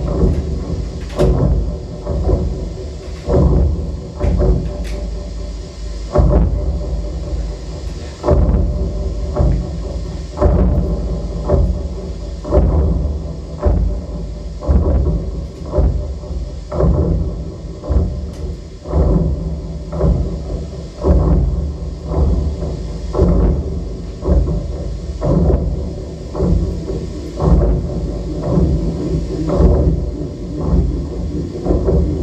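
Live experimental electronic music: a dense low rumble broken by heavy, irregular thuds roughly once a second.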